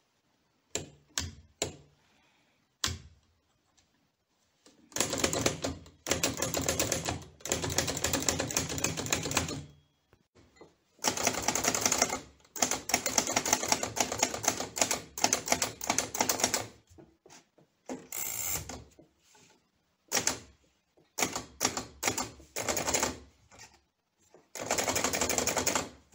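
Hammond No. 2 typewriter being typed on as a writing test of the freshly restored mechanism. A few separate keystrokes come first, then fast runs of typing broken by short pauses.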